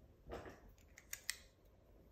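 Climbing rope and hitch cord rustling briefly as they are handled, then three quick light clicks of the carabiner and metal hardware about a second in.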